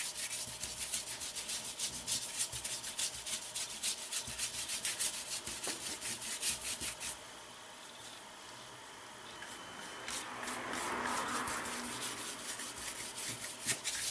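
A paintbrush scrubbing paint onto paper in quick, repeated back-and-forth strokes while the hair of a portrait is painted. The strokes pause about halfway through, then start again near the end.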